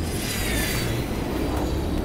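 Jet aircraft landing on an aircraft carrier's deck at night: a sudden rush of jet engine noise with a whine that falls slowly in pitch.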